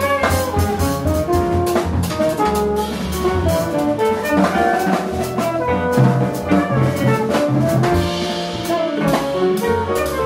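Jazz quintet of saxophone, electric guitar, piano, double bass and drum kit playing live, with a melody of held notes over busy drums and cymbal strokes.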